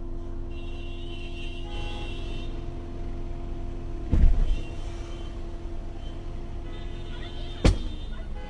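Car engine and road noise running steadily, with a heavy thump about four seconds in and a short sharp knock near the end.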